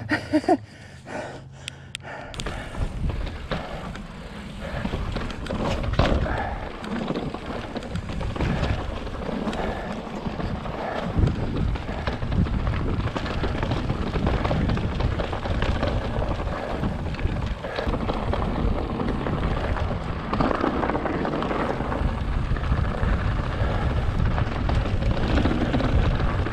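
Full-suspension mountain bike rolling over loose rock and dirt, with the tyres crunching and the bike rattling over stones and wind rumbling on the camera microphone. It is quieter for the first two seconds and louder and steady from about two seconds in, once the bike is moving down the rocky trail.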